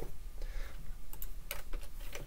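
A few keystrokes on a computer keyboard, short sharp clicks starting about a second in.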